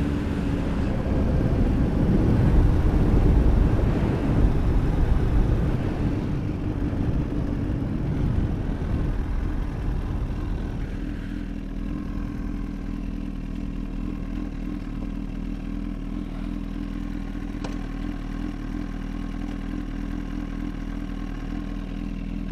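Honda CBR1000RR inline-four engine and wind noise as the motorcycle slows down, the noise fading over the first ten seconds or so, then the engine ticking over at low revs as the bike rolls to a stop on the shoulder. A single short click comes about three-quarters of the way through.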